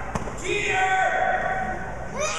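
A rubber kickball bounces once on a hard gym floor just after the start, then high-pitched voices call out in the hall.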